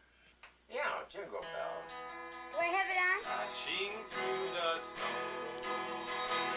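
Acoustic guitar strummed with a voice singing over it. It comes in about a second in, after a near-silent pause.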